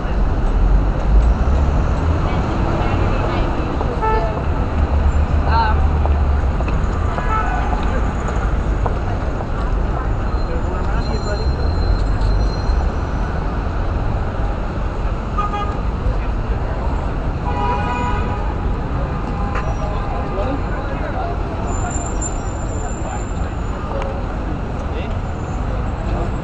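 City street traffic noise: a steady wash of passing vehicles with a low rumble, and a vehicle horn sounding briefly about two-thirds of the way through.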